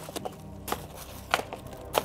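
High-heeled sandals stamping on paving stones and on a plastic-wrapped loaf of bread: about four sharp clicks, roughly every half second, over a faint low hum.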